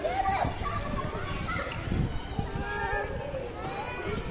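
Young children's voices, talking and calling out while they play.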